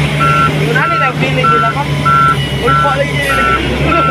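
A vehicle's reversing alarm beeping at an even pace, about one and a half beeps a second, over the steady hum of a running engine.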